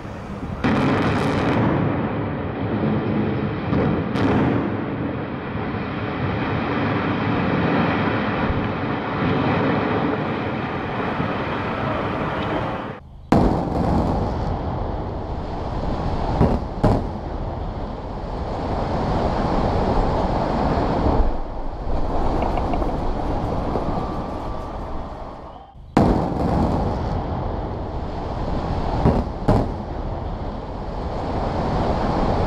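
Demolition charges going off in sharp bangs, followed by the long, loud rumble and roar of a concrete high-rise collapsing. The blast and collapse are heard three times over, breaking off abruptly at about 13 s and 26 s, and each new run opens with sharp bangs.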